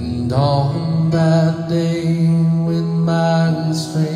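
A man singing a slow worship song with electric piano accompaniment, sliding into a note near the start and then holding long notes for several seconds.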